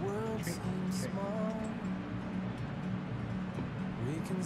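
A woman's sing-song voice calling "treat", then a second drawn-out sung call about a second in, over a steady low hum.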